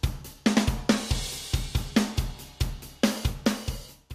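A recorded drum kit loop playing a steady beat of kick drum, snare and cymbals, run through a multiband compressor whose low-frequency band is being squeezed harder as its ratio is raised to about 4:1.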